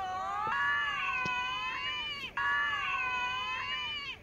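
High-pitched, drawn-out squealing cries, two long ones with a short break about two and a quarter seconds in.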